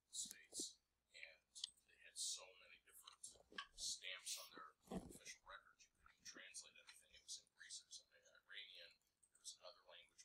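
Very faint, distant voices talking, barely picked up by the microphone, with a hissy, whisper-like quality.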